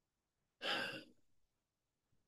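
A man's short audible breath, a sigh-like rush of air about half a second long, a little over half a second in.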